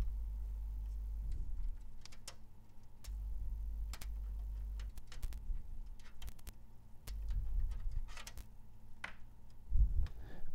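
Scattered light clicks and knocks of USB-to-UART adapters and their leads being handled and plugged into the back of a computer, over a low steady hum.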